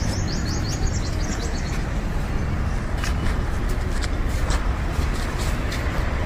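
Steady traffic rumble from a road, with a bird chirping in a quick series during the first two seconds and a few faint clicks later on.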